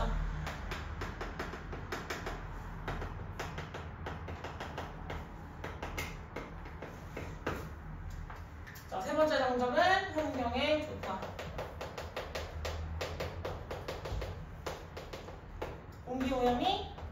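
Chalk writing on a chalkboard: a steady run of quick taps and scratches as letters are written, with a short stretch of voice about nine seconds in.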